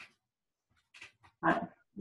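Mostly quiet, with a couple of faint soft sounds and one short spoken word, "right", about one and a half seconds in.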